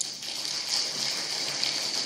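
Distant, even applause from a banquet-hall audience.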